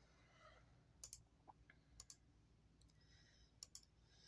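Near silence: room tone with a few faint clicks, about one, two and three and a half seconds in.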